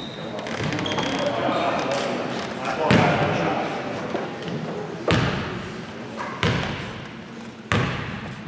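Basketball bounced on a hardwood gym floor by the shooter at the free-throw line: four separate bounces a second or two apart, each ringing in the hall, over spectators' chatter.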